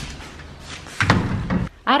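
A door slamming shut about halfway through, a sudden thud with a short low rumble.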